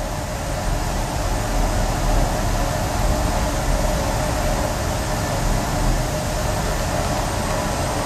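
Steady, even rushing air noise of room ventilation or a fan, a little louder after the first couple of seconds and then holding level.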